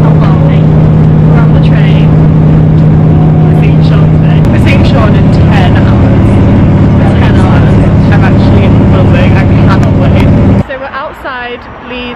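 Very loud, steady low drone of a moving vehicle heard from inside the cabin, with voices talking faintly underneath. Its note shifts slightly higher about four and a half seconds in, and the sound cuts off abruptly near the end.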